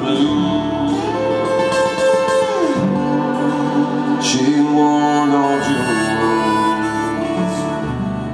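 Irish traditional band playing an instrumental break of a song: acoustic guitar strumming chords under a harmonica melody of held notes with bends.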